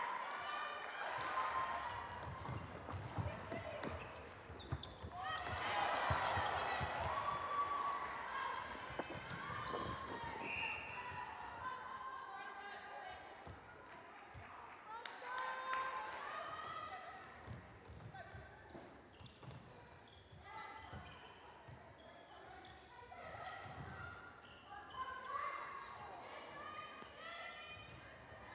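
Indoor netball court sounds: trainers squeaking and feet and the ball thudding on the wooden floor, with players' calls and crowd voices echoing in the hall. Louder in the first half.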